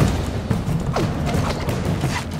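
Mechanical sound effects from an animated film's sound design: scattered clicks and creaking over a low rumble, with one falling creak about a second in, as a cable-strung arm moves. Faint music lies underneath.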